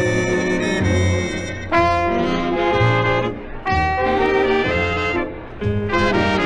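Big band dance orchestra playing an instrumental passage: brass and saxophones in held chords over a pulsing bass, the phrases breaking about every two seconds.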